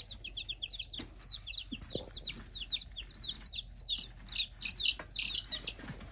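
Several baby chicks peeping without a break: a quick run of short, high-pitched cheeps, each rising and then falling, about three or four a second and often overlapping.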